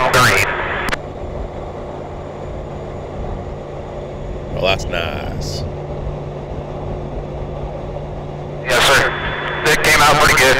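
Steady drone of vehicles running at highway speed: a constant low engine hum over road noise.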